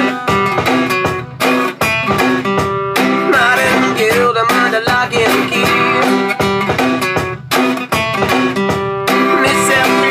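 Acoustic guitar strummed in a steady rhythm of chords, with a few brief breaks where the strings are stopped.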